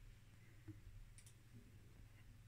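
Near silence, with a couple of faint clicks about a second in from the front-panel push buttons of a Rohde & Schwarz HMC8042 bench power supply being pressed.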